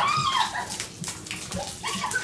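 A woman's short high squeal as a basin of ice water is poured over her head, followed by water splashing and dripping onto the tiled floor.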